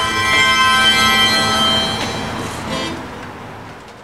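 The final chord of a live acoustic band, with harmonicas and acoustic guitar, is held and rings out, fading away over a few seconds.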